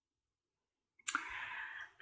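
Dead silence for about a second, then a short sharp mouth click and a faint intake of breath just before speech.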